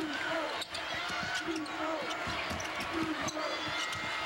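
A basketball dribbled repeatedly on a hardwood court, a run of short bounces over the steady noise and voices of an arena crowd.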